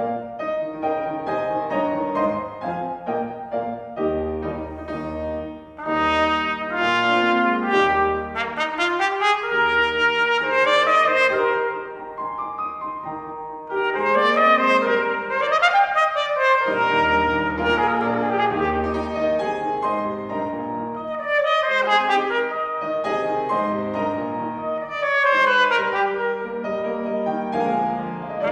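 A trumpet playing a classical concerto passage in phrases with short rests, with a piano accompanying beneath.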